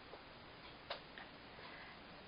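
A few small, faint clicks in a quiet small room, the sharpest about a second in: fingernails being bitten.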